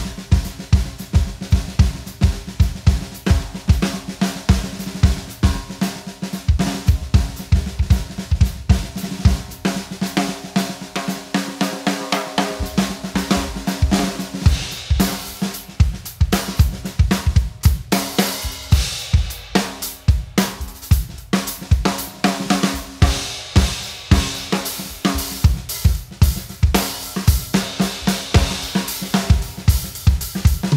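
Acoustic drum kit with Meinl cymbals played in a steady groove: bass drum, snare and hi-hat, with the bass drum dropping out for a couple of seconds near the middle and more cymbal wash in the second half.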